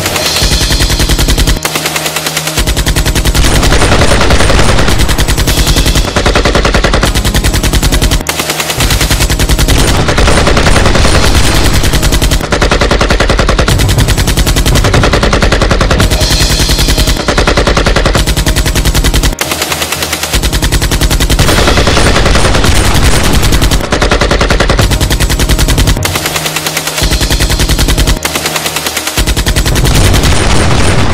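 Rapid automatic gunfire: long volleys of shots fired in quick succession, dense and loud, with a few short lulls between bursts.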